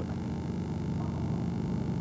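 Steady electrical mains hum with a faint hiss underneath.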